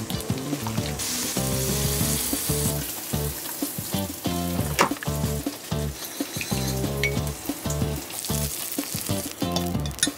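Background music over cooking sounds: oiled noodles tossed with chopsticks in a glass bowl and a dressing stirred with a spoon, with a sizzling hiss at times and a few light clicks.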